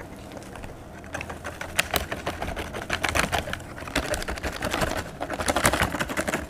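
Plastic snack packaging crinkling with a rapid, irregular crackle as a sachet of salted-egg seasoning powder is poured into a bag of crispy peyek crackers. The crackling begins about a second in and carries on in uneven clusters.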